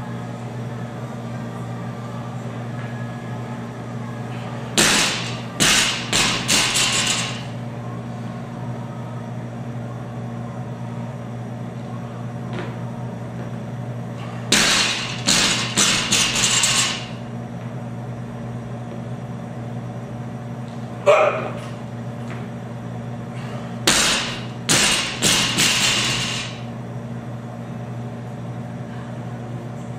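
A loaded 135 lb barbell is dropped to the gym floor three times, about ten seconds apart. Each landing is a heavy thud followed by three or four quicker, fading bounces with the plates rattling. A single sharp knock falls between the second and third drops, and a steady low hum runs underneath.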